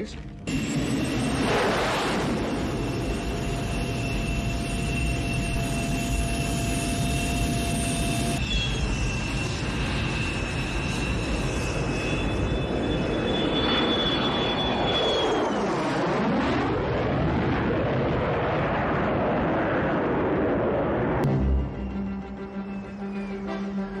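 Lockheed F-104 Starfighter's jet engine running loud and steady in flight, with a thin whistle over the noise and a falling-then-rising sweep about two-thirds of the way through.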